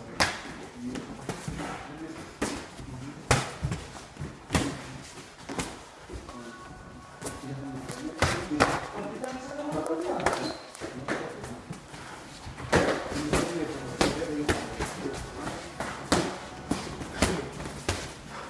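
Boxing gloves landing on gloves and headguards during sparring: irregular sharp thuds, some in quick pairs like a one-two, with shuffling steps and voices in between.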